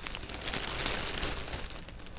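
Soft rustling of hands handling a stuffed crocheted toy head and pulling a yarn strand through it, a little louder in the middle.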